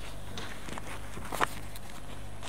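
A few light knocks and taps, the loudest about one and a half seconds in, over a steady low hum.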